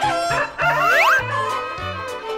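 A rooster crowing over background music with a steady bass line.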